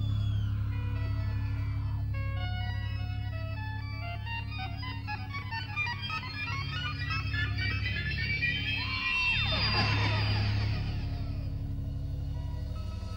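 Live band playing an instrumental passage: a steady low bass drone under a run of short, stepping keyboard notes, with gliding pitch sweeps near the end.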